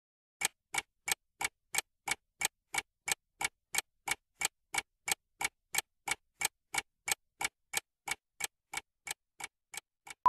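Clock-style ticking sound effect of a quiz countdown timer, about three even ticks a second, starting about half a second in and growing slightly fainter toward the end.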